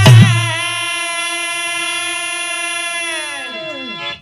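A last deep hand-drum stroke, then a male Birha singer holds one long sung note, which sags and falls away in pitch near the end.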